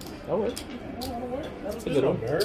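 Indistinct talk at a blackjack table, with a few light clicks from cards and chips being handled.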